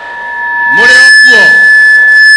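Public-address feedback: a single steady high-pitched tone rings through the loudspeakers and grows louder, over a short burst of a man's voice through the stage microphone about a second in.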